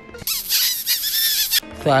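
A high-pitched, squeaky comedy sound effect with a wavering pitch. It starts a moment in, lasts about a second and a half, and cuts off suddenly.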